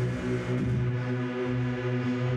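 Electronic synth-pop music played live on a keyboard synthesizer: held low synth notes and chords, steady in level, shifting about every half second to a second, with no vocals.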